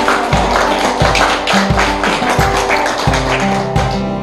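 A small group of people applauding, with some laughter, over background music with a steady repeating bass. The clapping fades out near the end while the music carries on.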